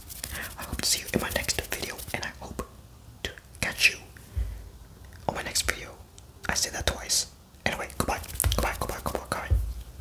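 Close-miked ASMR whispering and quick mouth sounds in short, rapid bursts, with a few low thuds from hands moving right at the microphone.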